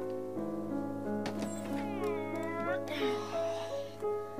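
Background music with steady held notes. From about two seconds in, a cat gives one drawn-out meow that dips and then rises in pitch.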